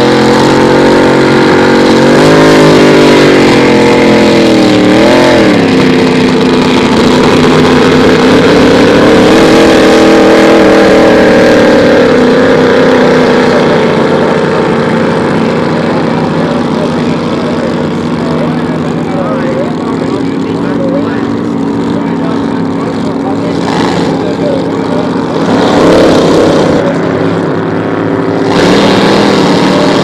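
Grand Prix hydroplane racing boats' inboard engines running loud, revving up and down in the first few seconds, then settling into a steadier drone as the boats get under way.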